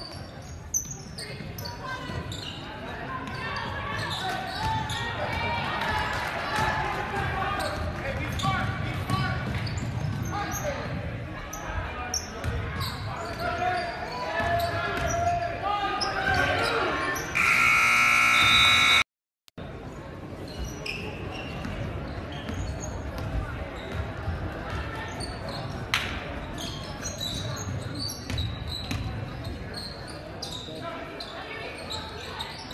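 Crowd chatter in a gymnasium with a basketball bouncing on the hardwood. About seventeen seconds in, a loud scoreboard buzzer sounds for under two seconds and cuts off abruptly.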